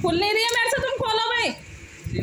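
A young child's high-pitched voice, speaking for about a second and a half.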